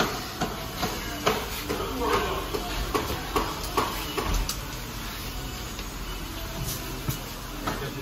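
Indistinct voices at a shop counter, with scattered short clicks and knocks over a steady low background hum.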